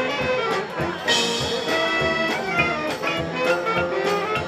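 A high school marching band playing live: brass and saxophones over drum kit and front-ensemble percussion, with a bright crash about a second in.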